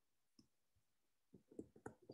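Faint tapping of a stylus pen on a tablet screen during handwriting: one tap about half a second in, then a quick run of taps from a little past halfway.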